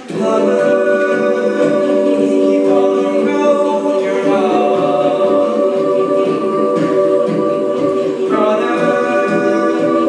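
A mixed-voice high school jazz choir singing a cappella into handheld microphones: held close-harmony chords that come in loudly at the start, move to a new chord about four seconds in, and change again about eight seconds in.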